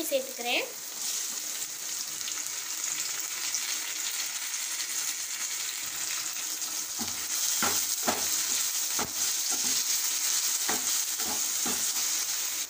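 Chopped tomatoes sizzling in hot oil with onions and curry leaves in a stainless steel kadai, a steady frying hiss that grows louder in the second half. A wooden spatula stirs them, knocking against the pan several times near the end.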